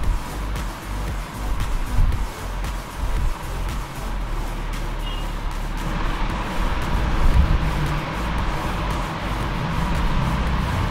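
Royal Enfield Himalayan's single-cylinder engine running while the motorcycle rides a dirt trail, with steady wind and tyre rumble, under background music.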